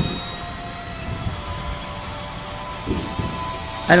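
A steady distant rumble with a few faint, steady whining tones over it, one dipping slightly in pitch about a second in; no booms or bangs.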